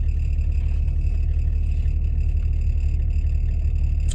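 Car engine running steadily, heard from inside the cabin as a low rumble, with a faint high whine over it.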